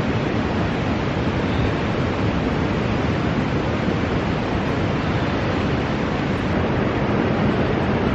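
A steady, even rushing noise with no distinct events, running at a constant level.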